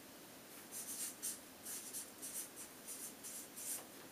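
Marker pen writing a figure on flip-chart paper: about a dozen short, scratchy strokes starting about half a second in.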